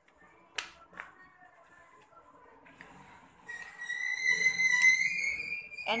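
A high whistle, one steady tone that rises slightly in pitch and lasts about two and a half seconds from about three and a half seconds in. Two faint clicks come earlier, about half a second and a second in.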